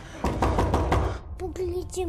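A quick, even run of about six knocks, roughly six a second, stopping about a second in. A steady pitched tone follows.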